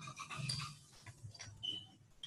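Faint breathy sounds from a person, quiet and uneven.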